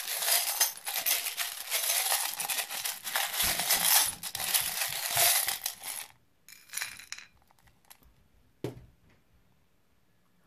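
A hand rummaging through a container of small metal charms, chains and trinkets: a dense, continuous jingling rattle of many little clicks for about six seconds. Then a few scattered clinks and a single knock near the end as a handful of charms is set down in a wooden bowl.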